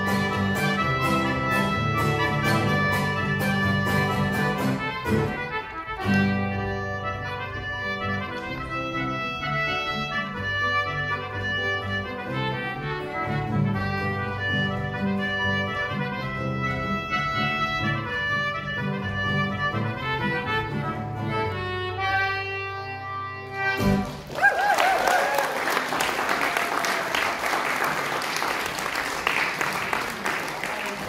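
Acoustic guitar and concertina playing an instrumental folk tune, which ends about 24 seconds in. An audience then applauds.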